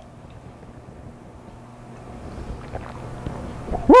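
Quiet room background with a few faint small sounds while two men drink the vodka, then near the end a man's loud, sharply rising "woo!" as the spirit burns going down.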